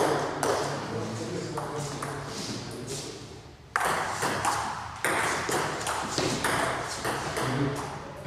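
Light pings of a table tennis ball, a string of short clicks at irregular intervals, with voices in the background.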